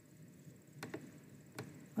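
Two faint computer mouse clicks, about three-quarters of a second apart, over low room hiss, as a small on-screen object is clicked and dragged.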